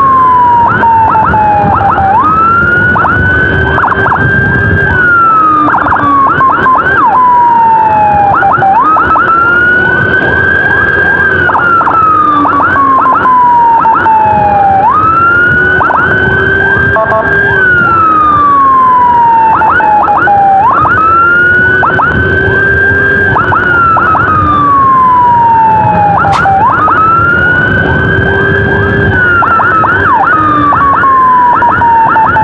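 Electronic emergency sirens sounding continuously. One tone jumps up quickly, holds, then falls slowly, repeating about every six seconds. Rapid short sweeps are layered over it, with vehicle engine and road rumble underneath.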